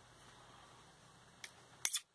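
Faint handling at a workbench, then two short sharp clicks, about a second and a half in and just before the end, the second louder: a plastic ballpoint pen and a steel knife blade being picked up and knocked together.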